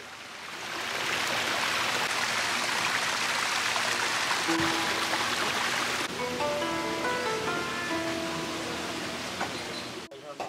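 Rushing water of a garden waterfall, a steady hiss that fades in at the start and eases a little later on. Background music of sustained notes comes in about halfway through.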